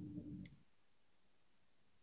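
A single computer mouse click about half a second in, as a faint low sound dies away; then near silence with faint room tone.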